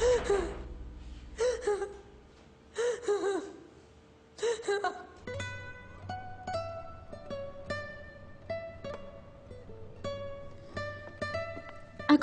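Four short vocal bursts with bending pitch in the first few seconds. Then, about five seconds in, a light plucked-string melody of single notes begins and runs on as background music.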